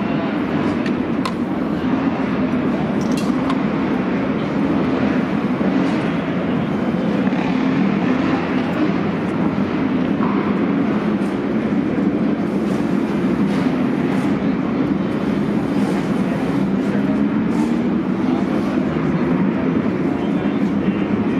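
Several midget race car engines running on the track, heard in the pits as a loud, steady, echoing drone with a slowly wavering pitch, mixed with the chatter of people nearby.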